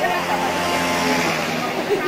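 A car engine running with a steady hum, under people's voices.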